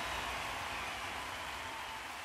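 Closing white-noise wash of a hands-up trance track, a steady hiss slowly fading out after the bass and beat have stopped.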